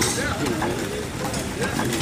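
A man's voice talking, over the steady clatter of an Ericsson hot air pumping engine running beneath it.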